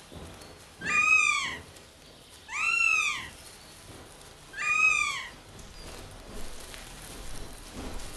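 Northern goshawk calling: three drawn-out, mewing wails, each rising and then falling in pitch, about two seconds apart.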